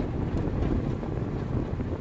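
Cabin noise of a Mitsubishi Outlander PHEV driving at about 70–80 km/h: a steady low rumble of road and wind noise, with the petrol engine running as a generator.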